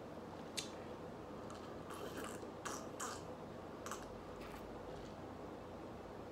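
A quiet room with a few faint clicks and short soft noises as a tall glass of michelada is handled.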